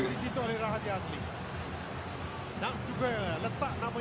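Faint speech in short snatches over a steady low background noise.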